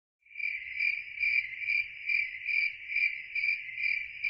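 Cricket chirping at night: a steady high trill that pulses about twice a second.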